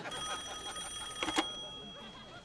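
A telephone ringing: one steady electronic ring that fades out, with two short clicks about a second and a quarter in.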